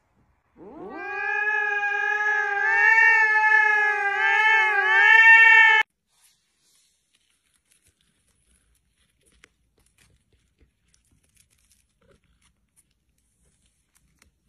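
A cat's long drawn-out yowl, rising in pitch at the start and then held for about five seconds, wavering near the end before it cuts off suddenly. After that there is near silence with a few faint ticks.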